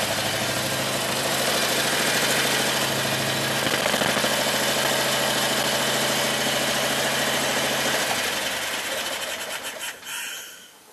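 Predator 670cc V-twin engine running steadily and smoothly with no hesitation, which the owner calls the best it has ever run. About eight seconds in it is shut off and winds down to a stop near the end.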